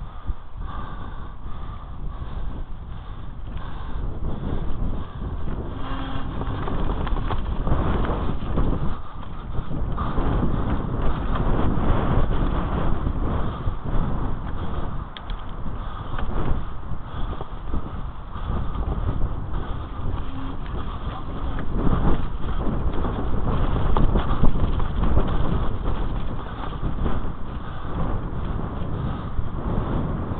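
Mountain bike descending a rough forest dirt trail, heard close to the rider: a continuous rumble of tyres over dirt and roots with many small knocks and rattles from the bike. It gets louder around a third of the way in and again past two thirds.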